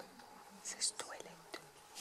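Hushed whispering voices, with a sharp click about a second in.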